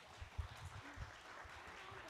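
Scattered applause from a small congregation in a church, with low thumps of handheld microphones being handled in the first second.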